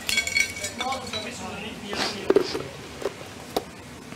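Light clicks, knocks and clinks of gift boxes and small items being handled, with a brief snatch of low voice. The sharpest ticks come a little past two seconds in and again near the end.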